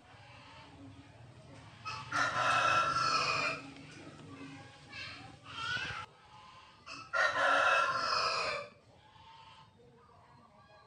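A rooster crowing twice, each crow about a second and a half long and the two about five seconds apart, with shorter, fainter calls between them.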